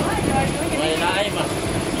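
People talking in the background over a steady, continuous engine-like hum.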